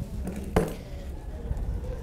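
A single light metallic click about half a second in, from steel grooming shears being handled at the dog's foot, over a low, steady background murmur.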